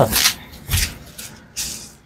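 Plastic bubble wrap rustling and crinkling in three short bursts as it is handled and wrapped for packing.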